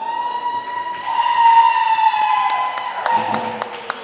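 The close of a live country band's song: one long high held note that sags a little in pitch and fades, with a few scattered claps coming in about halfway through.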